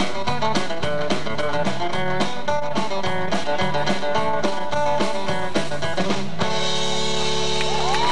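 Live country-rock band of acoustic guitars, bass and drums playing an instrumental ending, then stopping on one held final chord about six and a half seconds in.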